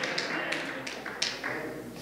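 Light, irregular taps, about a dozen, of a man's footsteps on a stage floor as he walks over to a pulpit.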